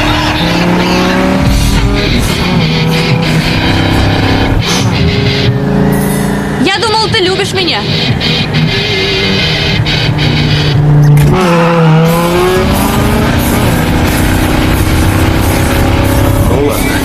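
Film soundtrack of a car race: driving music mixed with car engines revving hard and tyres squealing, with a sharp squeal about seven seconds in and engine pitch swooping near the twelve-second mark.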